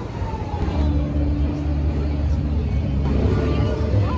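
Harley-Davidson motorcycle V-twin engine running at idle, a low steady rumble that swells about a second in.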